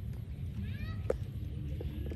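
Baby macaque giving one short, high squeal that bends up and down, about halfway in, followed at once by a single sharp knock, over a steady low rumble.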